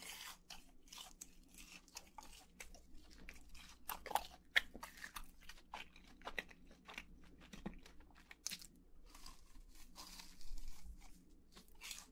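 Close-miked chewing of crispy fried chicken nuggets: an irregular run of crunches as the fried breading breaks between the teeth, loudest about four seconds in.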